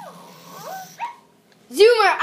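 Zoomer robot puppy toy giving a few short electronic yelps from its speaker in the first second, each sliding in pitch.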